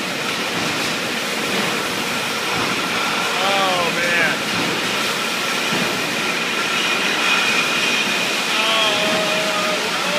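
Steady din of a running brewery bottling line, with its conveyors carrying glass bottles and the packaging machinery working, and a thin high whine held over it. Faint voices come through it briefly twice.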